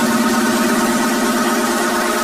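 Disco dance track in a break: the drum beat drops out and a sustained, buzzing synthesizer chord holds with a rapid pulse in its low note.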